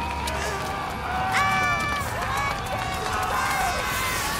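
People's voices calling and exclaiming in short bursts, not singing, over a steady noisy background.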